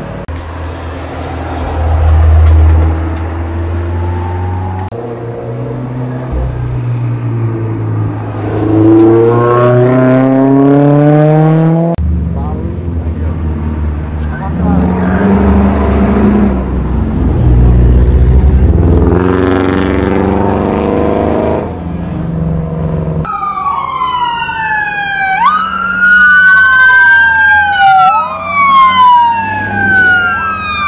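Car engines revving and accelerating through the bends, the pitch climbing as they pull away. In the last several seconds a police siren wails up and down, then switches to a faster yelp.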